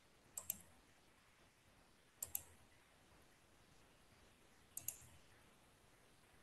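Computer mouse button clicking: three quick pairs of clicks, about two seconds apart, over near silence.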